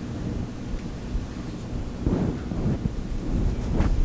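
A low, steady rumbling noise with faint rustles, of the kind a body-worn microphone picks up from the wearer's clothing and movement as he walks.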